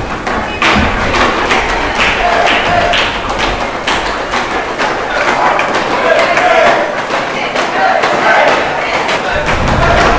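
Palms beating on wooden classroom desks in a steady rhythm, about two beats a second, with a group of boys' voices chanting and cheering along.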